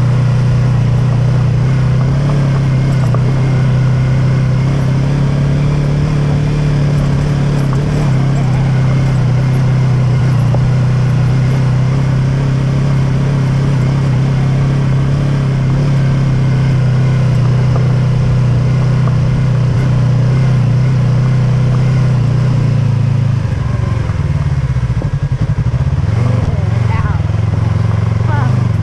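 Yamaha YZF-R3's parallel-twin engine running steadily under way, over a constant noise of wind and tyres on loose gravel. Near the end the engine note dips and wavers briefly, then steadies again.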